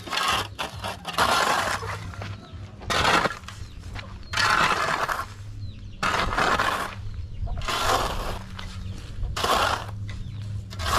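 A metal spade scraping and scooping gritty soil in repeated strokes, about seven in all, each a short rough scrape.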